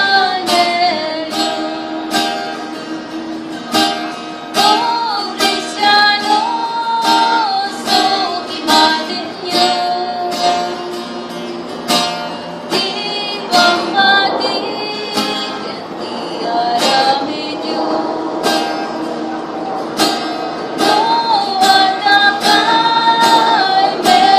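A woman singing an Ilocano hymn to a strummed acoustic guitar, with steady, even strokes beneath the held sung melody.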